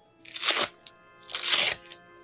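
A Velcro hook-and-loop fastener being pulled apart twice: two short ripping tears about a second apart.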